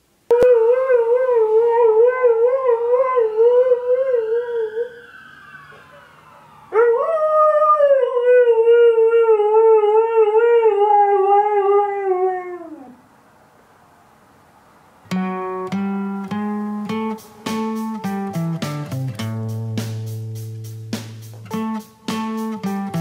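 Alaskan Malamute howling in response to a siren: one long howl with a wavering pitch, then after a short pause a second howl that jumps up and slowly slides down in pitch. Acoustic guitar music starts a couple of seconds after the howling stops.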